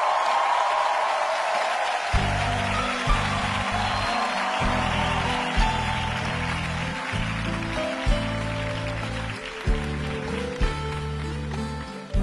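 Audience applause that fades over the first half, while a live band comes in about two seconds in, playing the opening chords of a song.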